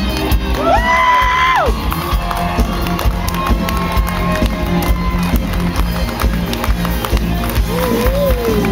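Live band music with a steady drum-kit beat, bass and guitar. About a second in a voice slides up to a loud held high note and drops off, over crowd cheering.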